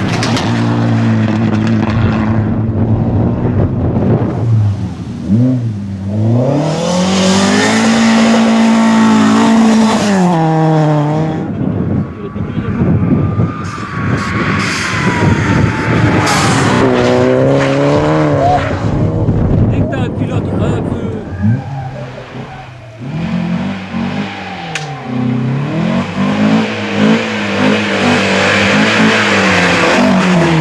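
Rally cars passing one after another at speed on a gravel stage, their engines revving high and dropping again and again as they shift gears and lift for corners, with bursts of tyre and gravel noise.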